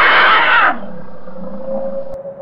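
A loud, strained, creature-like vocal cry that breaks off about three-quarters of a second in, leaving a quieter low drone.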